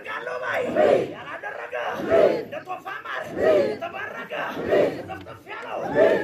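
A large crowd chanting in unison, a loud group shout with a falling pitch repeating evenly about every second and a quarter.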